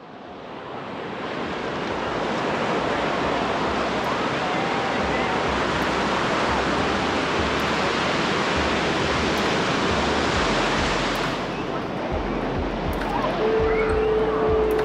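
Sea surf breaking and washing up the beach at the waterline: a steady rush of waves that swells in over the first couple of seconds. Near the end a short steady tone sounds over it.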